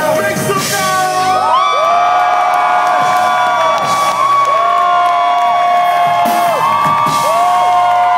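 Audience cheering and screaming: many long, high whoops overlap one after another, each held for a second or two and falling away at the end.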